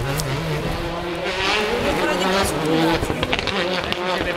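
Rally car engine running hard on the stage, its revs rising and falling, with spectators talking over it.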